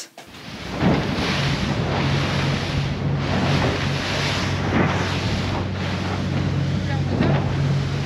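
Rigid inflatable boat running fast over choppy sea: a steady engine drone under rushing wind on the microphone and hull spray, fading in over the first second.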